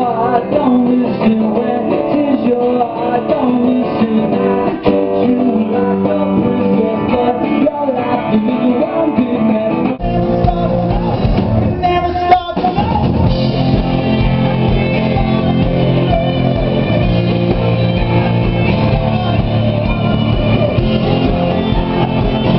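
Live rock band playing: electric guitars, drums and a lead singer. About ten seconds in, an edit jumps to another song with a heavier bass, and a brief dropout in the sound follows a couple of seconds later.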